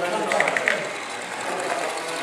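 Model locomotive running along the layout track, with a quick run of mechanical clicks about half a second in, over hall chatter.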